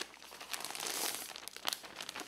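Thin plastic protective sheet crinkling as it is peeled off a tablet, with a couple of sharp ticks near the end.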